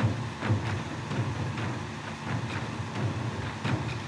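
Faint, irregular ticks and soft rustles of fingers handling fluorocarbon leader line while tying a surgeon's loop, over a steady background hum.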